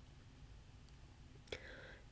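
Near silence: faint room hum and hiss, with one soft mouth click near the end.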